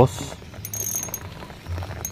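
Fishing reel clicking in a fast burst of about half a second, the ratchet working as the snagged line is pulled against.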